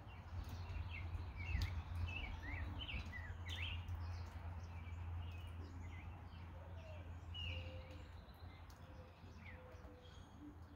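Songbirds chirping in short, high, down-slurred calls, many in the first four seconds and fewer after, over a steady low background rumble.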